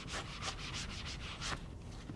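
Whiteboard eraser rubbed across a whiteboard in about six short back-and-forth strokes.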